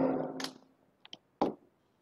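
A voice trailing off, then a few short, sharp clicks a second or so in, like keys on a computer keyboard.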